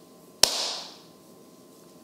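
A single sharp slap a little under half a second in: a mint sprig slapped between the hands to bring out its scent, with a short ringing tail that dies away within about half a second.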